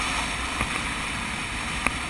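Motorcycle on the move heard from a bike-mounted camera: steady wind rush over the microphone with a low engine and road rumble underneath. A short sharp tick about half a second in and a louder one near the end.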